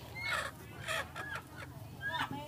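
Chickens clucking: several short calls over a low background.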